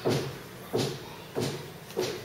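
Cardboard inner cover of a phone box being pulled up and out: three short scraping rustles, about two-thirds of a second apart.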